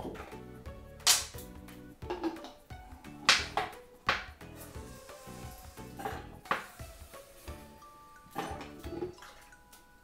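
Bottles being handled on a table: a plastic vinegar bottle uncapped and vinegar poured into a small glass bottle, with several sharp knocks and clinks of glass, a few seconds apart. Quiet background music plays underneath.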